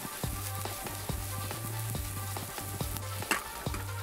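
Minced red onion sizzling as it fries in oil in a skillet on a gas burner, under background music with a steady beat.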